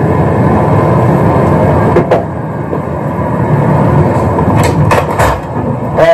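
Steady low vehicle rumble heard from inside a stopped RV, with a sharp click about two seconds in and a few clicks and a knock near the end as the RV's side door is opened.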